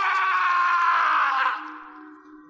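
A person's high, drawn-out cry, held for about a second and a half while falling slightly in pitch, then trailing off, over a steady low musical drone.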